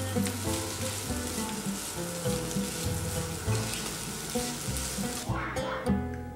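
Diced chicken sizzling as it fries in a nonstick pan, stirred with a spatula; the sizzle cuts off suddenly about five seconds in. Soft background music with plucked notes plays underneath.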